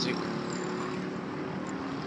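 Motorcycle engine running as the bike rides past close by, over a steady bed of street traffic noise.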